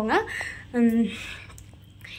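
A woman's voice: two short spoken sounds in the first second, then a quiet pause in her talk.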